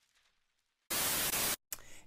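A short burst of loud, even static hiss, about two-thirds of a second long, that starts and cuts off abruptly after near silence: a TV-static transition sound effect at the cut from the intro card.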